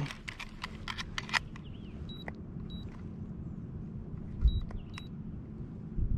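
Handheld digital fish scale beeping: four short, high beeps in two pairs about half a second apart, each with a small click, as its buttons are pressed. Before them come a few sharp clicks and rattles from handling the scale and lip-gripper.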